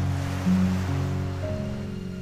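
Soft background music of held notes that shift pitch every half second or so, over small sea waves washing in, the wash strongest in the first second.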